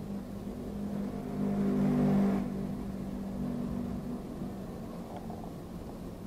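A motor vehicle's engine running with a steady low hum, getting louder to a peak about two seconds in and then fading away.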